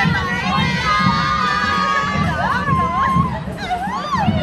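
A group of high voices shouting and cheering in long held calls, then wavering ones, amid a crowd, with a steady beat of parade music underneath.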